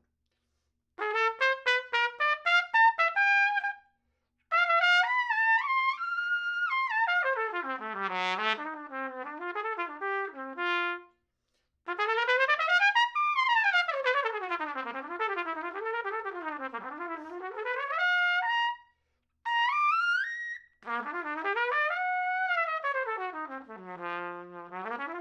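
Adams Hornet hybrid cornet-trumpet played solo with a TA1-rim, CS-cup mouthpiece. It opens with a string of short detached notes, then plays several phrases of fast runs that sweep widely up and down, with brief pauses between them.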